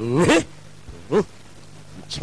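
Two short yelping vocal cries, pitched and bending: one at the start and a briefer one about a second in.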